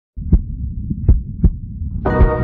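Opening of a logo intro's sound design: a low bass rumble with deep, heartbeat-like thumps, three strong ones and a weaker one.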